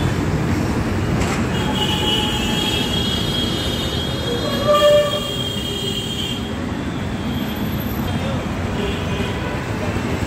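Heavy road traffic with buses passing: a steady rumble, a high squeal for several seconds, and a short horn honk about five seconds in, the loudest sound.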